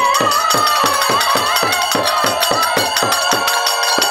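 Bengali naam-kirtan music: a khol drum playing quick strokes, about five a second, each low boom bending downward in pitch, with jingling kartal hand cymbals, a harmonium's held tones and a high wavering melody line on top. The drum's low strokes drop out briefly near the end.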